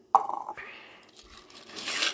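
Dry elbow macaroni being added to a pot of simmering goulash: a sudden noisy sound just after the start that fades within about half a second, and another short one near the end.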